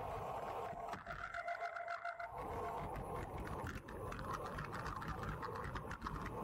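Wind rushing over the microphone and road noise from a bicycle descent at speed, with a steady buzzing drone on top.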